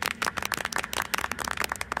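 A small group clapping their hands: many quick, light claps in a rapid, uneven patter.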